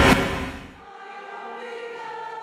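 A whoosh-like swell peaks at the start and dies away within the first second, as a TV news transition effect. A choir then sings a steady, sustained chord.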